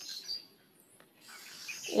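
Felt-tip sketch pen squeaking and scratching on notebook paper as a letter is drawn. It stops for a moment about a quarter of the way in and resumes for the next letter near the end.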